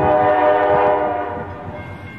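A train horn sounding one sustained chord that starts suddenly and fades away over about two seconds.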